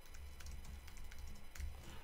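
Typing on a computer keyboard: a faint, irregular run of keystroke clicks over a low hum.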